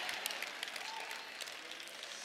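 Congregation applauding faintly, scattered claps with a murmur of voices, dying away.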